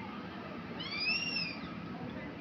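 A child's high-pitched squeal that rises and then falls over most of a second, about halfway through, over background chatter of people.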